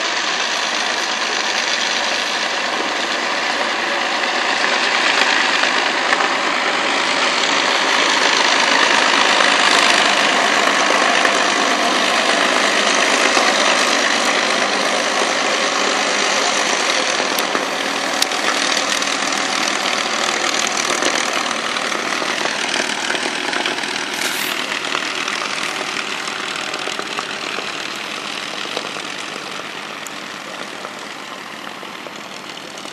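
An Avro Lancaster's four Rolls-Royce Merlin V12 engines running as the bomber taxis along the runway. The sound grows louder to a peak about ten seconds in as it passes, then slowly fades as it moves away.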